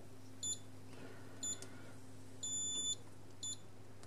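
RusGuard R-10 EHT reader-controller's buzzer beeping in response to a card held to it in programming mode, as the card is registered as the master card. A short beep, another about a second later, a longer beep around two and a half seconds in, then a short beep near the end, over a faint steady hum.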